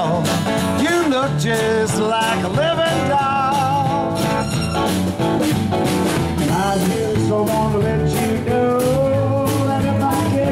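Live folk-rock band playing an instrumental passage: acoustic guitars and a drum kit keeping a steady beat, under a lead melody that bends and slides in pitch.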